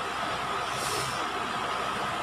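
Steady background road-traffic noise, with a faint engine hum and a brief hiss about a second in.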